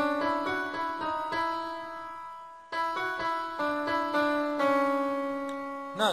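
Yamaha arranger keyboard played with a piano voice: a slow melody picked out one note at a time, each note ringing and fading. There is a brief lull about two and a half seconds in.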